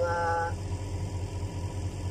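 A brief held vowel from a man's voice, then the steady low rumble of an engine idling.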